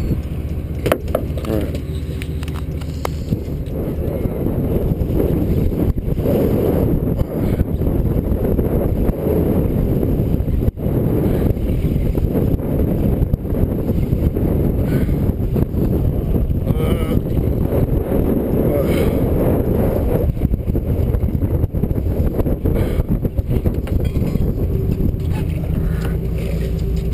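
Steady low rumble of wind buffeting a helmet camera's microphone, mixed with the running sound of a fishing boat, heavier through the middle and easing near the end.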